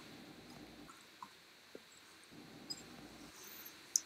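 Faint room tone: a low steady hiss with a few small, soft clicks scattered through it.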